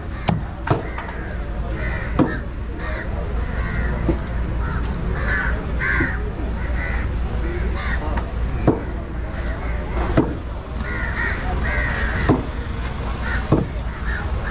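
A heavy curved knife chops through a fish on a wooden block, making sharp knocks every second or two. Crows caw several times, in a cluster about five to seven seconds in and again near eleven to twelve seconds.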